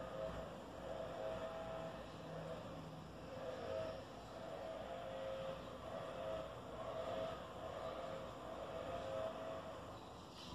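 A steady background hum carrying a pair of slightly wavering tones, like a distant engine or motor running.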